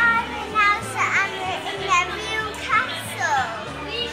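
A young girl's high-pitched, excited voice in short sliding squeals and sounds without clear words, over background music with steady low notes.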